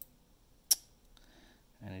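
A single sharp snap as a small lithium cell is pressed into a plastic earbud shell: its soldered lead breaking off.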